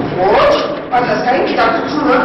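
A young man's voice speaking stage dialogue with sharply rising and falling pitch, on worn, hissy VHS tape audio.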